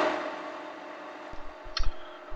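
Acera F3 mill-drill spindle running, a steady motor hum with several tones, loudest at the start and easing off. A short hiss and a few low thumps come near the end.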